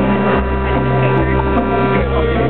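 Amplified live band music: a held chord over deep bass notes that change pitch a few times.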